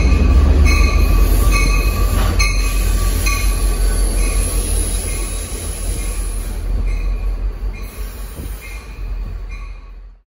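MBTA commuter rail train rolling past on steel rails: a heavy low rumble with repeated brief high-pitched wheel squeals. It fades steadily as the train moves away.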